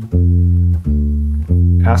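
Fender Precision Bass playing a minor-triad arpeggio: three plucked notes in turn (root, minor third, fifth), each ringing for about two thirds of a second.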